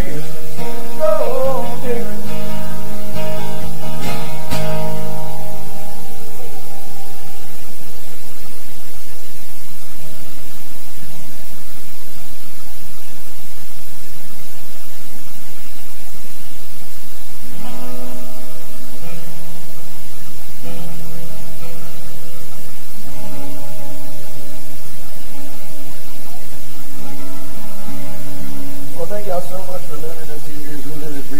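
Live acoustic music: two acoustic guitars strummed and picked. The playing thins out after about five seconds and fuller chords come back around two-thirds of the way through.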